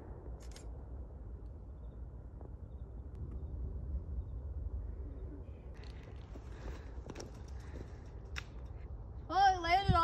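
Wind rumbling on the phone microphone, with a few faint clicks. Near the end a person lets out a loud, drawn-out, wavering vocal cry, just as a thrown stone hits the creek.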